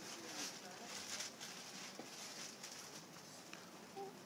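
Faint rustling and a few soft clicks in a quiet room as a smartphone is handled close to a clip-on microphone.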